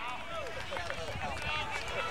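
Voices talking and calling out, softer than close commentary, over a steady outdoor background noise.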